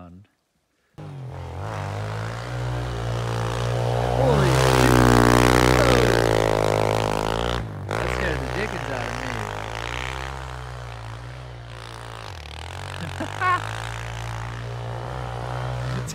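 Background music, a song with a steady bass line and a melody or vocals, starting suddenly about a second in after a moment of silence.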